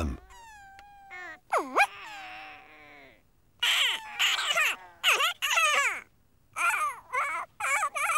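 High-pitched, squeaky gibberish voices of clay-animation characters. A falling squeaky tone and a swooping call come first, then from about three and a half seconds in there are several short bursts of chattering with sliding pitch.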